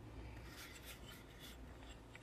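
Faint rubbing and scraping as a steel ruler is slid and repositioned against a power bank's case, a cluster of short strokes starting about half a second in.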